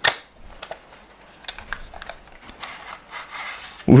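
Small paperboard retail box being opened by hand: a sharp click as the flap comes free, then a run of light scrapes and small taps as the inner tray is slid out.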